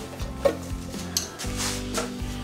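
Rustling and scraping of a boxed part being picked up and handled, over quiet background music with steady low notes.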